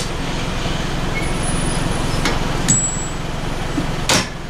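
Steady low rumble of an idling engine, with two faint clicks a little after the middle as the trailer coupling is wound down onto the tow ball.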